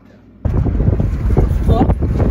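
Loud rumbling wind buffeting and road noise inside a moving car, cutting in suddenly about half a second in.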